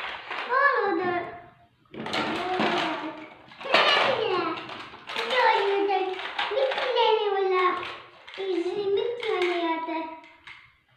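A young child's high-pitched voice chattering and babbling in short phrases without clear words, with brief pauses between them.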